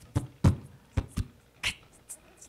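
Beatboxed rhythm into a microphone: separate deep kick-like thumps, a sharper snare-like hit and short hissing hi-hat sounds, roughly two strokes a second, with no guitar chords or singing under them.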